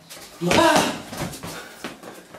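A man's voice calls out "un" as a count, loud and sharp. A few faint knocks and scuffs follow, with a slightly louder one near the end.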